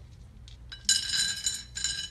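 Stones dropped into a glass jar, clinking against the glass: two ringing clinks, the first about halfway through and a second near the end.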